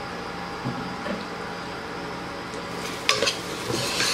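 Prawn masala sizzling steadily in an uncovered pressure cooker as the water released by the prawns nearly cooks off. A metal spoon scrapes and clicks against the pot near the end as stirring begins.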